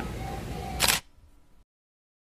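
Camera shutter click sound effect, a single sharp snap just before one second in, on top of faint outdoor background noise that cuts off right after it into silence.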